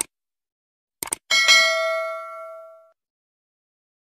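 Subscribe-button animation sound effect. A click at the start and a quick double click about a second in are followed by a bright bell ding that rings out and fades over about a second and a half.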